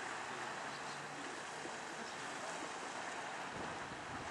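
Steady rush of wind on the microphone and moving water, with no distinct engine note.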